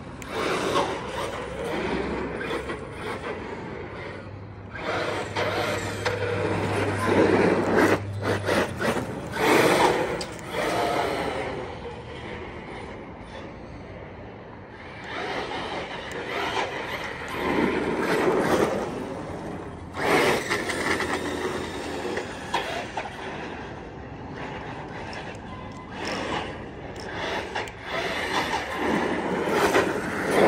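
Team Corally Kagama RC monster truck running on a 4S battery: its electric motor and drivetrain whine together with tyre noise on asphalt, surging and fading in repeated bursts as the throttle is worked, loudest as it passes near.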